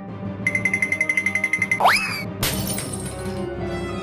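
Cartoon sound effects over background music: a fast pulsing warble, a quick rising boing-like glide, then a glass fishbowl shattering about two and a half seconds in.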